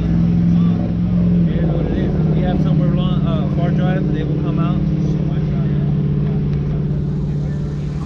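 A car engine idling steadily, a loud, even low drone, with faint voices talking in the background.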